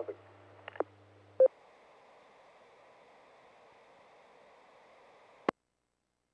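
Two-metre amateur radio repeater heard through a receiver at the end of a check-in. The caller's low 100 Hz access-tone hum stops with a short courtesy beep about a second and a half in. The repeater's carrier then hangs with a faint hiss until a sharp click about five and a half seconds in, when it drops and the squelch closes to silence.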